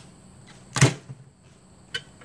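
A single-shot break-action 12-gauge shotgun snapped shut with one sharp metallic clack about a second in, followed by a lighter click near the end.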